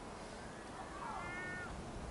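A bird's drawn-out mewing call, once, about a second in, falling slightly at its end, over a low rumble.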